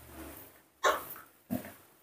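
Two short, sharp animal calls, the first loud and the second weaker and lower, about two-thirds of a second apart.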